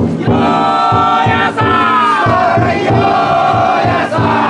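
Taiko drum inside a Banshu-style festival float beating a steady rhythm, about two to three strokes a second, while the many bearers shout a long, drawn-out call together.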